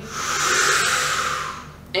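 A man drawing one big, deep breath in: a long airy inhale lasting nearly two seconds that tapers off at the end. It is the full final inhale a freediver takes just before a breath hold.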